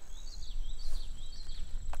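Summer woodland ambience: a low wind rumble on the microphone, about five short, high chirping calls from a bird spread evenly through the two seconds, and a thin, steady, high insect drone.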